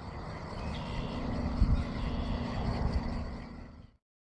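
Outdoor ambience with a low steady rumble and a faint hum, with a soft low thump about one and a half seconds in; the sound fades out just before the end.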